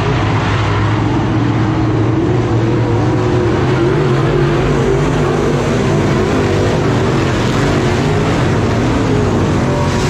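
Dirt track race cars running hard around the oval in a feature or heat. Their engines make a loud, continuous noise whose pitch wavers up and down as the cars lift and get back on the throttle.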